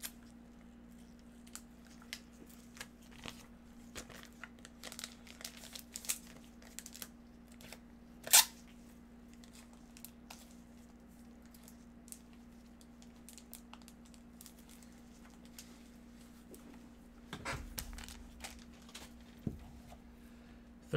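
Trading-card box packaging being opened by hand: scattered light clicks and crinkles, then one loud, short tear about eight seconds in, with more rustling of the packaging near the end.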